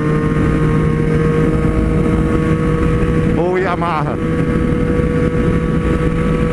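Triumph 765 cc three-cylinder motorcycle engine running steadily at highway cruising speed, about 110 km/h in fifth gear, with wind rushing over the microphone.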